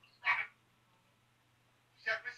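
A man's voice: one short, slightly croaky syllable, then a pause with only a faint steady low hum underneath.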